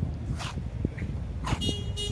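Outdoor ambience with an uneven low rumble, typical of wind on the microphone, and two brief hissing swishes. Near the end there is a short horn-like toot.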